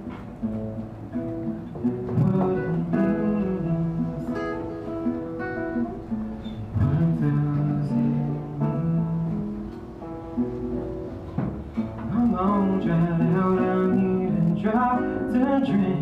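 Acoustic guitar played live, accompanying a song.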